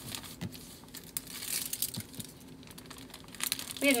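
Plastic poly mailer crinkling irregularly as it is folded flat by hand around a garment for shipping.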